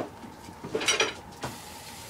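A few short clatters and knocks of kitchen items being handled on a countertop, about a second in.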